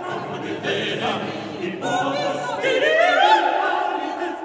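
Chamber choir singing a cappella in a contemporary choral piece, with several voices sliding upward in pitch from a little past halfway, under a stone cathedral vault.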